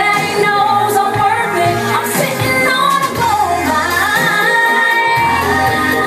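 A woman singing live into a microphone over loud pop music with bass notes underneath.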